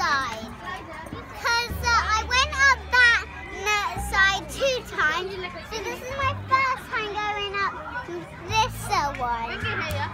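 Children's high voices shouting and calling out as they play, several at once, over background music.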